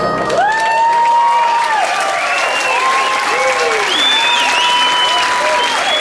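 Audience applauding and cheering with whoops as the song's last sustained chord dies away about half a second in.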